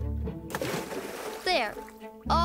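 A short burst of bath water splashing, about a second long, starting about half a second in, as a scrub brush works in a bubble bath. Background music plays under it.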